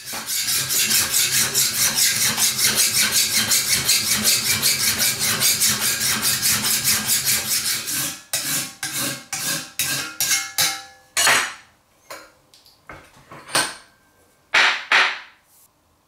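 Steel knife blade being hand-sharpened with a file or stone held in the hand: fast rasping strokes along the blade, about four a second, for the first half. The strokes then slow into separate passes, and only a few single strokes with pauses come near the end.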